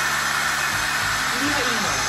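Monarc Charlie cordless stick vacuum's motor running loudly and steadily on one of its higher power levels.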